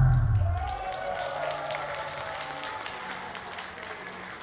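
A pop song's final note dying away within the first second, then scattered clapping from a small audience.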